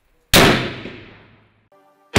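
A single .308 Winchester rifle shot, fired into a ballistic gel block: one sharp report that rings and dies away over about a second.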